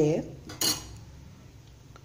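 A single sharp metallic clink about half a second in: a utensil knocking against metal cookware. Low kitchen background follows.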